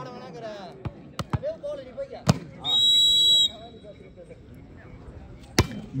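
A few sharp knocks, then a referee's whistle blown once for just under a second to signal the serve. Near the end comes a loud sharp smack as a volleyball is struck on the serve.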